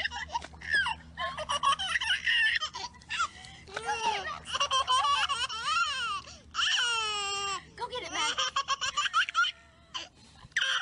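A toddler laughing in repeated bursts, with a woman laughing along.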